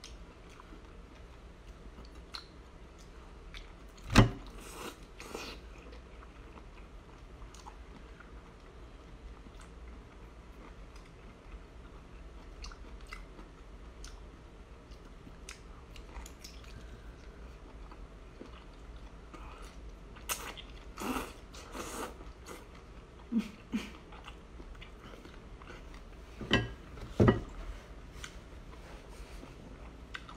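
Biting and chewing on a whole boiled octopus's tentacles: sparse wet mouth sounds, with one sharp loud one about four seconds in and a cluster of louder ones near the end.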